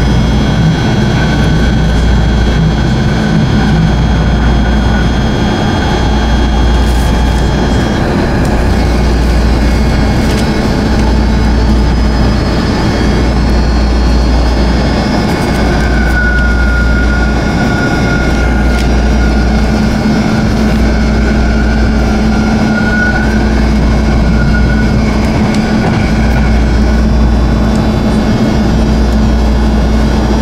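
Interior ride noise of a BART train at speed: a loud, steady rumble with a low hum. A thin high whine holds for several seconds midway.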